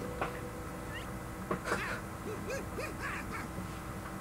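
Cartoon soundtrack playing at low level: a string of short, squawky creature calls and voices with wavering pitch, clustered through the middle, over a faint steady hum.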